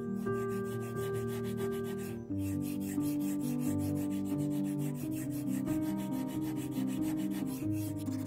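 An octagonal wood-and-silver mechanical pencil barrel being hand-sanded against an abrasive sheet, with a quick, even rhythm of rubbing strokes. Background music with sustained, slowly changing chords plays along.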